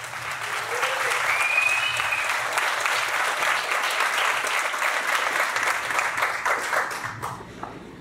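Audience applauding, a dense patter of many hands clapping that fades out about seven seconds in.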